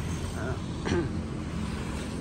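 Road traffic: a steady low rumble of passing vehicles, with a motorbike going by. A brief faint voice is heard about a second in.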